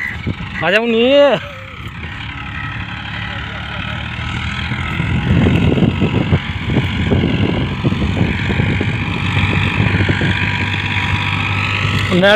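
Farmtrac Champion tractor's diesel engine running under load while pulling a seven-foot cultivator through dry soil. It swells louder from about four seconds in as the tractor comes closer. A brief voice is heard about a second in.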